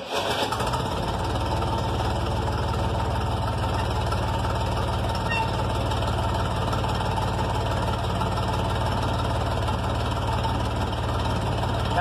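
Ford gasoline farm tractor engine catching right at the start and settling straight into a steady idle at about 700 rpm, started without the choke on a mildly chilly day.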